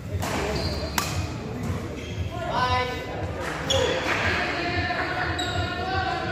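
Voices echoing in a large indoor sports hall, with a sharp tap about a second in and a few lighter knocks from the badminton court.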